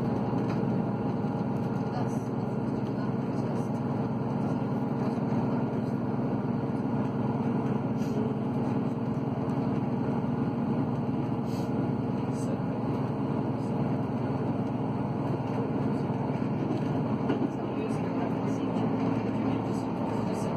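Running noise of a passenger train heard from inside the carriage as it crosses a steel railway bridge: a steady rumble with faint hums and a few light clicks.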